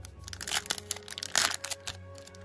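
Foil trading-card pack being torn open at its crimped top: a run of crinkling crackles, with a louder rip near the middle.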